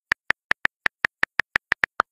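Typing sound effect: short high clicky blips in quick succession, about six a second, one for each letter as the text types on.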